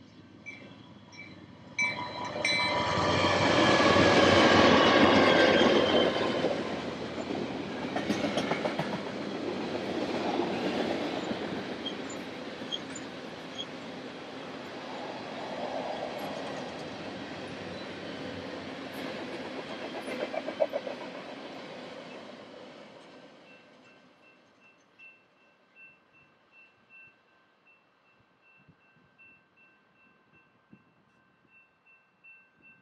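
A freight train's diesel locomotives sound their horn about two seconds in and pass close by, followed by a long run of tank cars rolling past with wheels clattering on the rail; the train noise fades out after about 23 seconds. A crossing bell rings faintly at the start and again near the end, about once a second.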